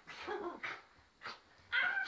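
Small dog barking and yipping in several short bursts.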